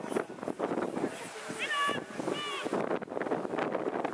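Players and spectators shouting across a rugby pitch, with wind on the microphone. Two high, held calls stand out in the middle.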